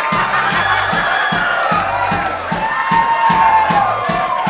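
Live band music with a steady drum beat, with a crowd cheering over it.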